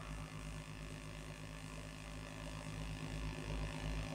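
Faint steady low hum with light background hiss, and no voices.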